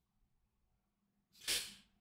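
A man's single short, sharp breath out into a close microphone, about one and a half seconds in; otherwise near silence.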